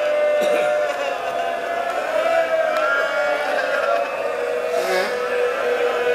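Mourners wailing in grief: several voices crying out in long, wavering held tones.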